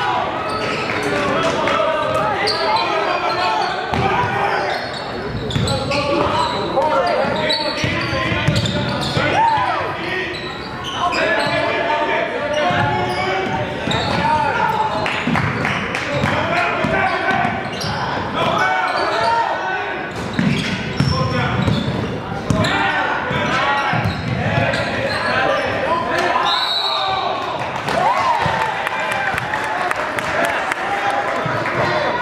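Voices of players and spectators chattering and calling out across a gym, with a basketball bouncing on the hardwood court.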